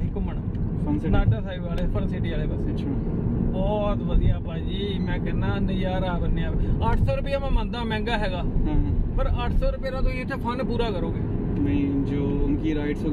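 Men talking inside a moving car, over the steady low rumble of road and engine noise in the cabin.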